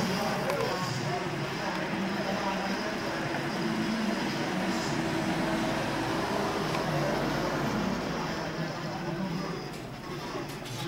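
Indistinct chatter of roadside spectators, with a car's engine running low in the background. The sound holds steady, with no single loud event.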